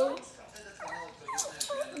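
Small dog whimpering and yipping in short rising whines, several times. He is begging to be fed.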